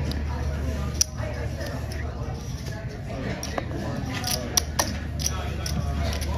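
Casino chips clicking as a stack is set down and handled on the baccarat table, a handful of sharp clicks. Under them, a steady murmur of background voices and a low hum.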